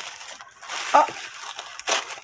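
Tissue paper rustling and crinkling as hands unwrap it from around a small tin, with one short sharp crackle near the end.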